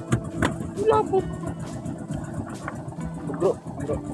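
An engine running steadily with a low hum, with a few sharp knocks and brief voices over it.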